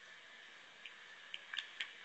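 Faint hiss of a poor telephone line with a few soft clicks about a second in and again near the end: a gap on a call with connection problems.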